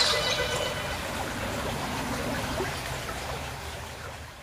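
Steady rushing background noise that slowly fades away toward the end.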